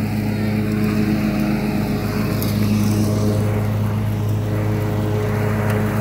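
Cub Cadet zero-turn riding mower's engine running at a steady speed as the mower drives across the lawn.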